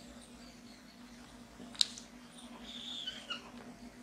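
Marker on a whiteboard: a sharp tap of the tip just under two seconds in, then a faint squeak as a line is drawn.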